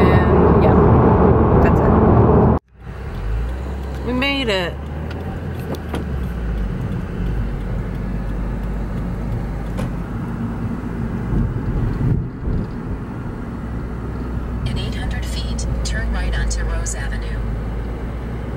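Road noise inside a moving car's cabin: a steady low rumble of engine and tyres. It follows a sudden cut from a louder, noisier stretch about two and a half seconds in.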